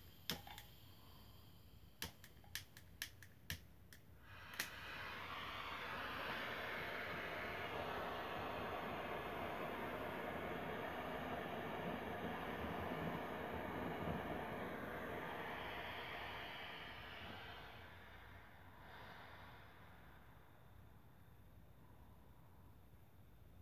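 A handheld propane torch's igniter clicks about five times, then the torch lights and burns with a steady hiss as its flame heats the frayed end of a nylon rope to fuse it. The hiss dies away about eighteen seconds in.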